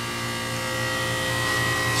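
Steady low electrical hum with a thin high whine that grows louder in the second half, from the air-conditioning condensing unit.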